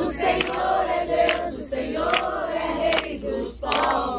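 A group of people singing a hymn together in Portuguese, mostly women's voices, clapping their hands along with the song.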